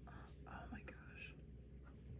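A woman's short, faint, whispered exclamation, then near silence: room tone.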